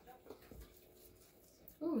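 A quiet pause with faint background room tone and a soft low thump about half a second in, then a woman's short 'Ooh' near the end.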